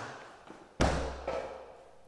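A single heavy thump about a second in, with a short low rumble trailing after it in the empty garage.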